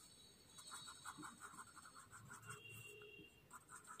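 Very faint rubbing of a paper blending stump on a paper tile, in quick small circular strokes that smooth graphite shading.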